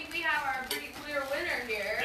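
Indistinct voices talking, with a brief sharp click a little under a second in.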